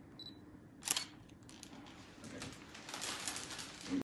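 Camera shutters clicking. A short high beep comes first, then a single sharp click about a second in, then a rapid run of clicks near the end.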